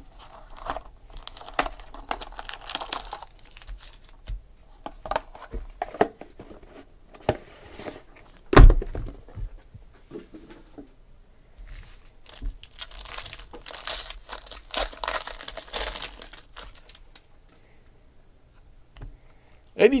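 Foil wrapper of a sealed trading-card pack crinkling and tearing as it is handled and opened, in two spells of crackle, with one loud thump near the middle.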